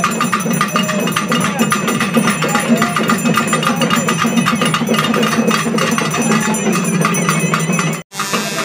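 Fast, dense festival drumming with short wailing tones that rise and fall over it, and crowd voices beneath; it cuts off abruptly at the end.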